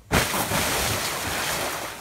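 A splash as a person lands on an inflatable sleeping mat floating in a small above-ground pool, followed by a steady rush of water.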